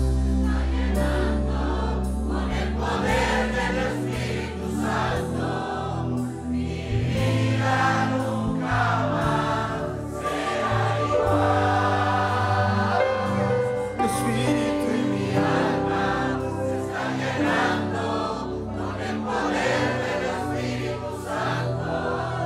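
A congregation singing a worship song together over a band, with electric bass notes underneath.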